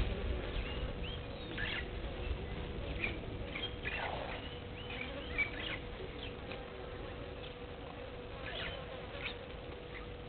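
Outdoor bush ambience: scattered short, high bird chirps and calls over a steady low buzzing hum.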